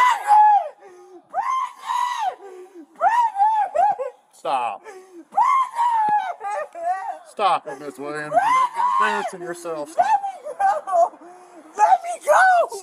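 A woman screaming and shouting in repeated high-pitched cries of distress as she is held down and restrained.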